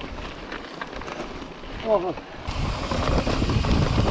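Wind buffeting the camera microphone and mountain bike tyres rolling over dry dirt and rock singletrack, with scattered rattles from the bike; the rushing noise gets louder about two and a half seconds in. A rider exclaims "oh" about two seconds in.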